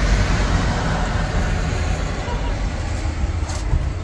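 Steady low rumble of motor vehicles running, with no sudden events.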